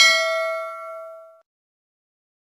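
Notification-bell 'ding' sound effect from a subscribe-button animation: one bright bell chime that rings out, fades and stops after about a second and a half.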